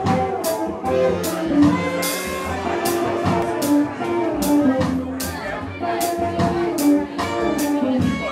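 Live jazz band playing, with a drum kit keeping a steady beat of cymbal strokes, about two a second, under sustained melodic notes.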